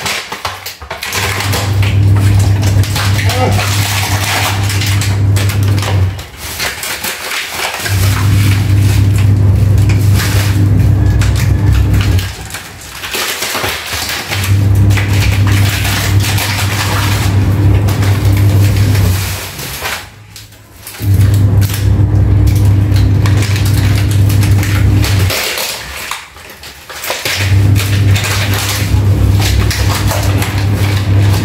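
Washing machine running a wash: a steady motor hum with the churn of water and clothes. It goes in spells of about five seconds and stops briefly between them, five spells in all.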